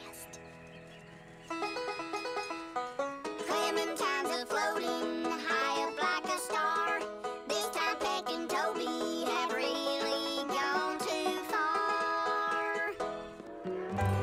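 Children's cartoon song: high cartoon voices singing a bouncy bluegrass-style tune over plucked banjo. The song starts about a second and a half in, after a quieter opening.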